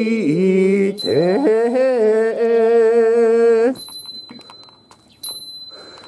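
Goeika Buddhist pilgrim hymn chanted in long, drawn-out wavering notes over the steady high ring of a small hand bell. The chanting breaks off a little over halfway through, leaving the bell ringing, and a fresh bell stroke comes near the end.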